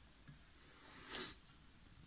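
A kitchen knife cutting down through a hard bar of dark chocolate onto a plastic cutting board, with one short scrape about a second in.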